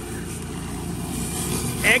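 Whisper Wash 19-inch Classic surface cleaner running over wet concrete: a steady hiss of high-pressure water from its spinning four-nozzle bar, over the even hum of the pressure washer's engine.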